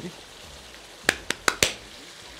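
Goat liver, heart and kidney masala simmering in a non-stick frying pan near the end of cooking, with the oil separated on top: a steady, even sizzling hiss. A little past halfway through come four sharp clicks close together.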